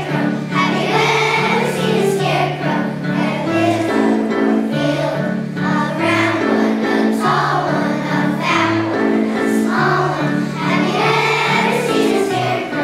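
A choir of first- and second-grade children singing a song together over an instrumental accompaniment with a steady bass line.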